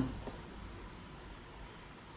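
Quiet room tone: a faint steady hiss, with one faint short click just after the start.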